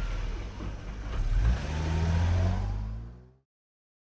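Car engine accelerating, its pitch rising about a second in, then fading out and cutting to silence about three and a half seconds in.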